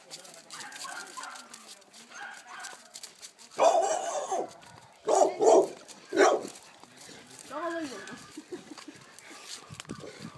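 Dog barking: a few loud barks between about three and a half and six and a half seconds in, with quieter voice sounds around them.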